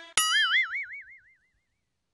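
A cartoon-style 'boing' sound effect: a sudden twang whose pitch wobbles up and down about five times a second, fading out over about a second and a half.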